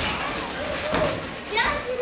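A single thud about a second in during karate sparring on a padded mat, followed near the end by high-pitched children's voices.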